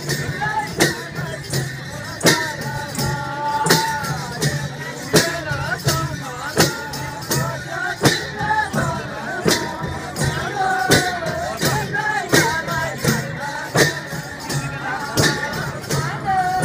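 Nepali Kauda folk song performed live: group singing over a steady beat of hand drums and percussion, a sharp stroke about every three quarters of a second.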